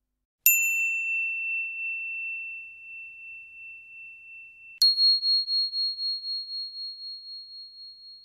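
Two bell-like chime strikes, a notification ding. The first, about half a second in, rings at a high pitch and fades slowly with a wavering ring; the second, higher in pitch, is struck nearly five seconds in and rings on as it fades.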